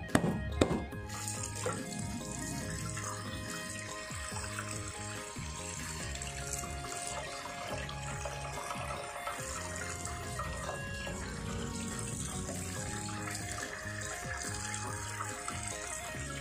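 Tap water running into a stainless steel sink as a gutted fish is rinsed under it by hand, over background music. A couple of sharp knocks of a knife on a cutting board right at the start.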